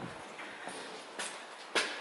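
Footsteps on a hard floor: a few separate steps, the clearest two in the second half.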